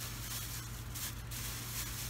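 Rustling of a cloth shirt and a plastic bag being handled and folded, busiest in the first second, over a steady low electrical hum.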